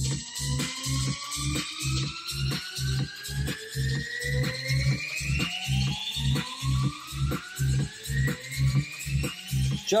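Electronic dance track playing through the Pioneer DDJ-FLX4 in rekordbox with the Mobius smart effect on: several tones rise in pitch together and keep climbing without end over a steady kick beat of about two a second.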